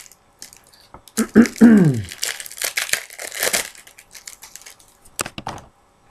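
A man clears his throat loudly about a second in, then baseball card pack wrappers crinkle and tear as cards are handled, with a couple of sharp clicks near the end.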